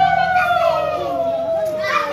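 A conch shell blown in one long, steady note that sags slowly lower in pitch toward the end as the breath runs out, with children's and women's voices chattering underneath.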